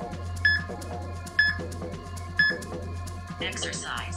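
Three electronic countdown beeps from an interval-timer app, one a second apart, marking the end of a rest period, over background electronic music with a steady beat. A short voice prompt from the timer follows near the end, announcing the start of the exercise interval.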